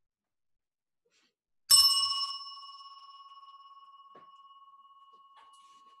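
A small bell struck once about two seconds in, ringing with a clear, high tone that slowly dies away over the next four seconds.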